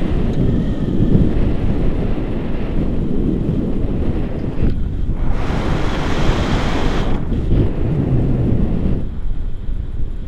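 Wind rushing over an action camera's microphone in flight under a tandem paraglider: a loud, low, gusty buffeting that swells and dips.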